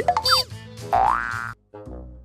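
Comedy intro jingle with cartoon sound effects: quick up-and-down pitch sweeps, then a long rising glide that cuts off suddenly about a second and a half in, followed by short brassy notes.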